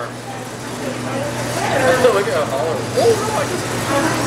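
Indistinct talking over a steady low hum.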